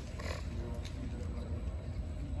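Indistinct distant voices of a group of people talking in a large indoor hall, over a steady low rumble.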